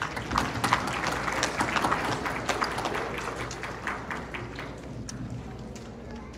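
Audience applauding, a dense patter of hand claps that thins out and fades toward the end.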